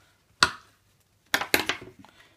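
A Nerf bandolier with a plastic clip being taken off and handled: one sharp click about half a second in, then a quick run of clicks and knocks near the end.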